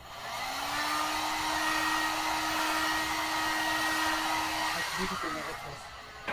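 Heat gun blowing air, its motor spinning up to a steady hum at the start. It is switched off a little before the end and the rush of air dies away.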